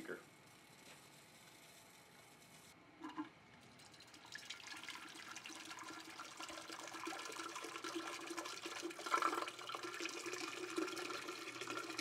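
Water starting to spurt out of plastic RO tubing into a glass beaker, beginning about four seconds in and growing louder, spluttering with air as the freshly filled carbon filter purges trapped air and carbon dust.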